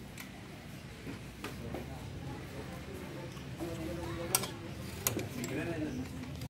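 Indistinct voices talking in the background, with a few sharp metallic clicks from hands working at a motorcycle's rear brake pedal linkage, the loudest about four and a half seconds in.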